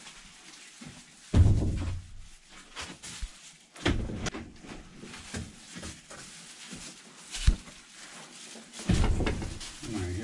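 A hinged door being swung open and later shut, with a few heavy bumps and a sharp knock about three quarters of the way through.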